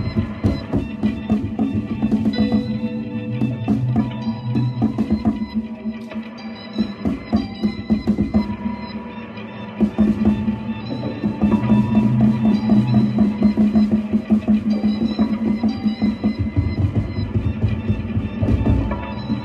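Live band jamming: electric guitar over a drum kit keeping a steady beat, with a sustained low note underneath. The playing gets fuller and louder about ten seconds in.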